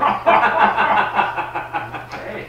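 A person laughing: a loud run of quick chuckles lasting about two seconds.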